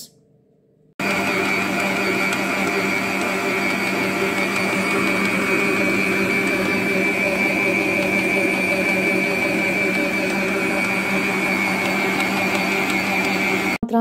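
Daewoo planetary stand mixer's motor running steadily at speed while kneading bread dough. It starts about a second in and cuts off suddenly just before the end.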